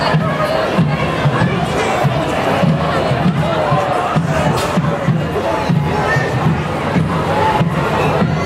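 Parade crowd noise with shouts and calls from the costumed witches and onlookers, over music with a steady low beat.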